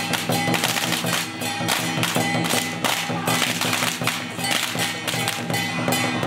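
Traditional temple-troupe percussion ensemble of drum, large brass cymbals and gongs beating a fast, even rhythm.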